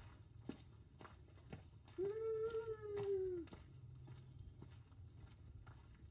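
A single drawn-out wordless call, held at one high pitch for about a second and a half starting about two seconds in, sagging slightly as it ends.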